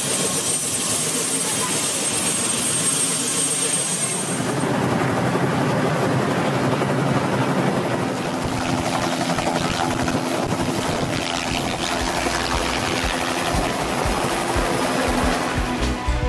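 Helicopter running: a dense, steady rotor and engine noise with a high thin turbine whine over the first few seconds. It is then heard from inside the doorless cabin as the flight begins, with rushing wind and a low steady hum.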